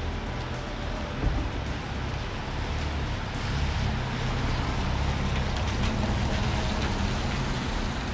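Street traffic on wet pavement: a steady hiss of tyres with low engine rumble, growing a little louder about three seconds in.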